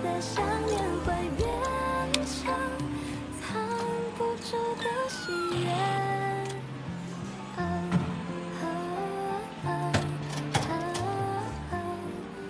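A soft pop song: a singer's melody glides over a steady, stepping bass line, with a few light clicks of percussion.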